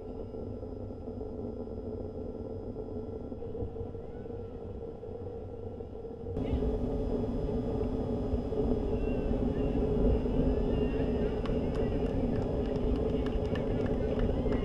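A steady low hum with faint voices, then about six seconds in a sudden change to the louder, steady rumble of a fire engine's diesel engine running as the truck is hauled along by rope, with a few sharp ticks near the end.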